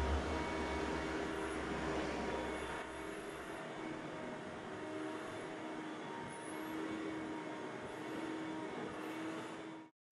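Shop vacuum running: a steady rushing noise with a faint motor whine. A low rumble drops away about three and a half seconds in, and the sound cuts off suddenly just before the end.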